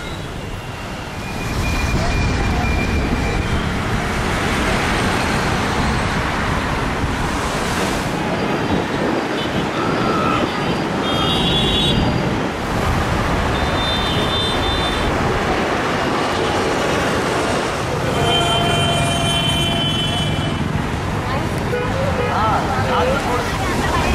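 Busy city road traffic: a steady roar of passing vehicles, with horns sounding several times in the second half.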